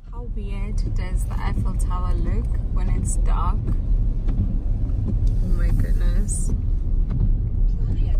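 Steady low rumble of a car's cabin on the move, with voices talking quietly inside.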